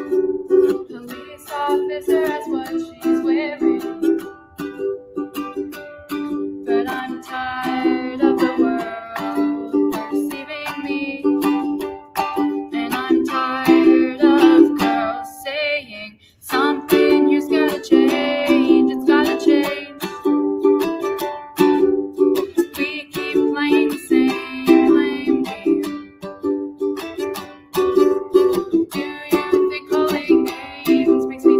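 Ukulele strummed in a steady repeating chord pattern, with a young woman singing over it at times. The playing breaks off briefly about sixteen seconds in, then resumes.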